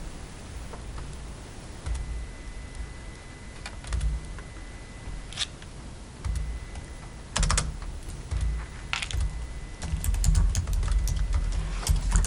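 Typing on a laptop keyboard: scattered clicks in short runs with gaps, busier near the end, over uneven low thumps and rumble. A faint steady high tone runs underneath.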